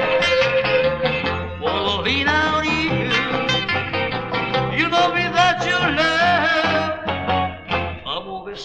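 Mid-1960s beat-group recording in a stretch without sung words: electric guitar playing bending melodic lines over bass and drums.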